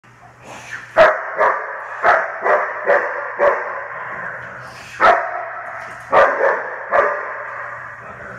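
Dog barking hard and repeatedly at a decoy during bite-work agitation, about ten barks in two bursts with a pause in the middle, echoing off the hard walls. A steady low hum runs underneath.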